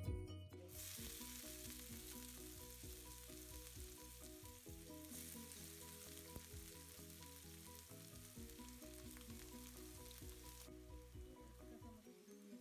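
Sliced onion frying in hot oil in a nonstick pan, a quiet sizzle that starts suddenly about half a second in as the onion goes into the oil, stirred now and then with a spatula. The sizzle drops away near the end, with soft background music underneath.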